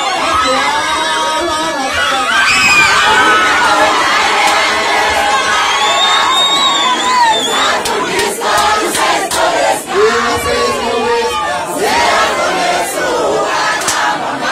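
A large crowd of excited fans shouting and cheering together, with shrill voices rising and falling above the din. Through the second half a run of sharp knocks cuts through the cheering.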